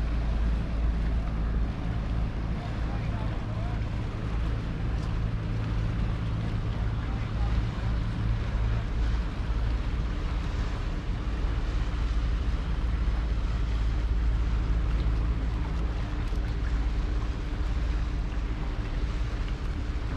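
A boat engine running steadily as a low hum, under a steady rumble of wind on the microphone.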